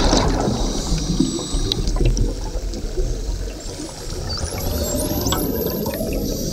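Underwater noise at a sardine bait ball: a dense, continuous rushing and crackling of churned water and bubbles from Cape gannets and predators diving through the shoal. It dips slightly in the middle and is very intense.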